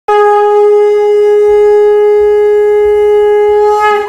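Conch shell (shankh) blown in one long, loud, steady note that breaks off near the end.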